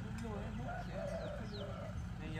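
Birds calling: a few short, high chirps, each falling in pitch, over lower wavering calls.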